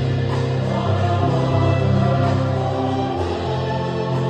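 Mixed choir of about twelve voices singing sacred music with a small instrumental ensemble including violins, in held chords that change about once a second.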